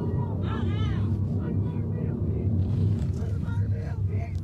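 A steady car rumble of engine and road noise, with indistinct voices over it during the first second.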